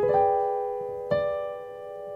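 Piano notes: two notes a minor third apart (A-flat and B) struck together and left ringing as they fade, with a third note added about a second in. The chord is being stacked in minor thirds on the way to a G-sharp diminished major seventh.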